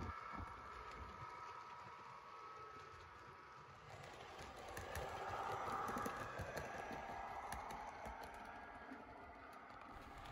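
A model railway train running on the layout's track: faint, quick clicking of small wheels over the rail joints with a light running hum. It grows a little louder about five seconds in as the coaches pass close by, then fades.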